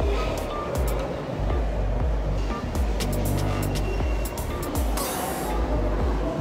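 Background music with a deep bass line and percussion hits.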